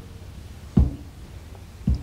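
Two dull, low thuds about a second apart over quiet room tone.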